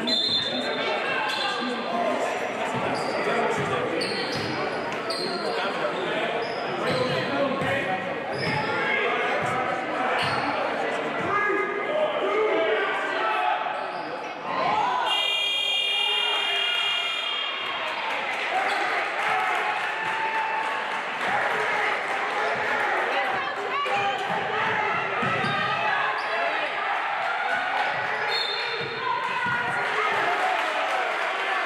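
Basketball game on a hardwood gym floor: the ball dribbling, short high sneaker squeaks and players' and spectators' voices echoing in the hall. About halfway through, the scoreboard buzzer sounds for about two and a half seconds as the shot clock reads zero.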